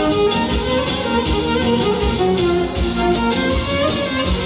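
Live amplified Greek folk dance music led by a violin, a quick melody over a steady beat.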